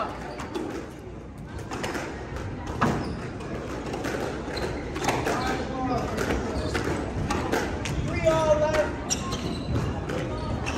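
Squash rally: a few sharp knocks of the squash ball coming off rackets and the court walls, spaced irregularly, with voices in the background.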